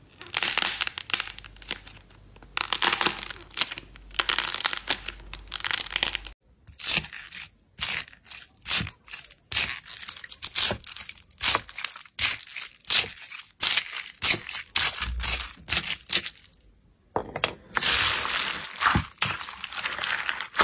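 Hand-made slime and foam-bead ASMR sounds. First, a glossy duck-shaped slime squeezed in the hands gives a dense crackle. Then a honey-dipper stick pokes into a tub of pink foam beads, a quick series of separate short, sharp clicks and pops, and near the end hands pressing into the beaded mass give longer bursts of crackling.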